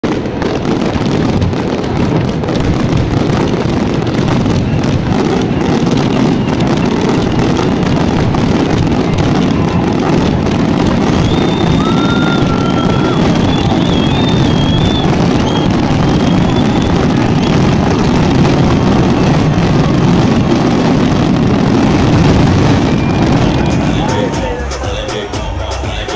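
A large aerial fireworks display going off in a dense, continuous barrage of rapid bangs and crackles, with a few brief whistles around the middle.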